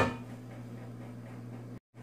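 A steady low hum with a faint hiss behind it, broken by a brief dropout to silence near the end.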